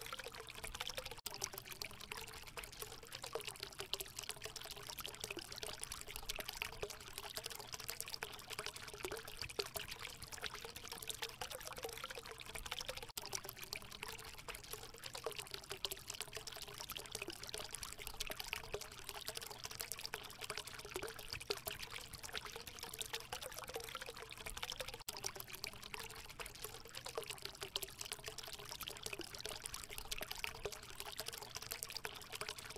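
Steady trickling, flowing water, like a small stream, with a faint wavering tone underneath.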